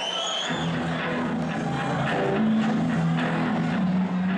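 Live rock band starting a song: amplified electric guitar and bass hold low notes that shift pitch partway through. A brief high rising tone sounds right at the start.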